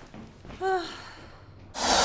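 A woman's short sigh about half a second in. Near the end, a loud whoosh sweep cuts in: a scene-change sound effect.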